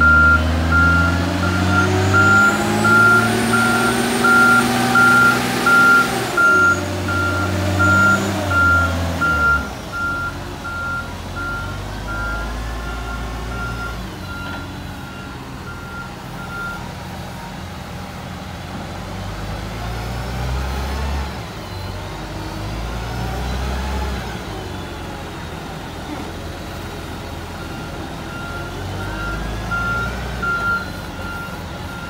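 Trackmobile Hercules railcar mover's diesel engine working, with its reversing alarm beeping steadily. The engine revs up and down through the first ten seconds, then runs lower and steadier. The beeping stops a little past halfway and starts again near the end.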